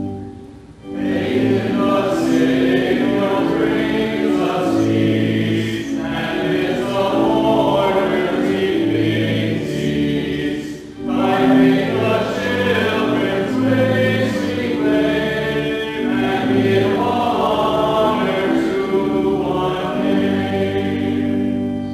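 Voices singing the opening hymn over a sustained instrumental accompaniment, in held notes with brief breaks between phrases about a second in and again near the middle.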